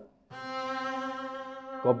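Double bass playing a single long bowed note, held steady for about a second and a half after a short silence: the opening note of the phrase, played strong.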